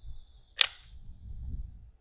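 A single sharp metallic click from a handgun being handled, about half a second in. A thin, faint high tone fades out shortly after, and there is a low rumble.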